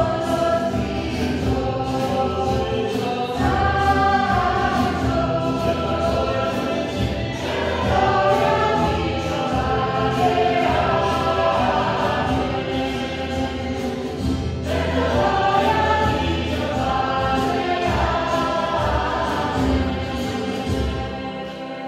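Choir singing sacred music in phrases that swell and fall.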